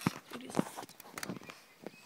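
Footsteps with scattered knocks and rubs from a handheld phone being carried while walking, a few sharp clicks at uneven intervals.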